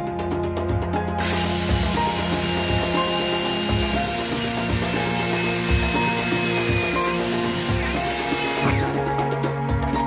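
Corded power drill in a drill stand boring through a pool ball. It starts about a second in, runs steadily with a high whine that sags slightly in pitch under load, and stops shortly before the end. Background music with a steady beat plays underneath.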